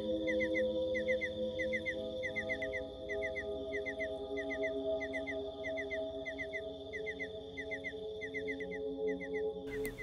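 Soft sustained music drone under a chirping forest ambience: quick chirps in groups of three or four, about two groups a second, with a faint high steady whine.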